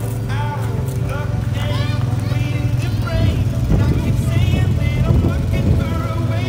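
ATV engine running steadily at low speed, with voices calling out over it.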